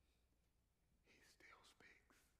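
Near silence for about a second, then faint whispering.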